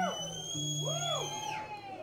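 Live country band playing an instrumental passage: a lead line of swooping notes bent up and down over held bass notes, with a high held tone that falls away about a second and a half in.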